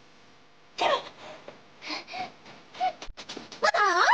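Short grunts and gasps of exertion from a fight, three brief cries about a second apart, then a quick run of sharp knocks and slaps near the end as blows land.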